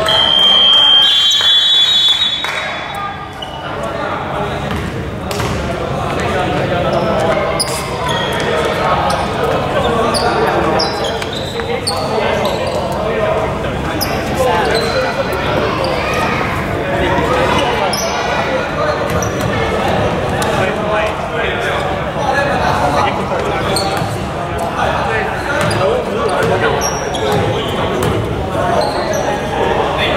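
A long, high referee's whistle blown for about two seconds at the start, then the echoing hubbub of a basketball hall: players' and spectators' voices with a ball bouncing now and then.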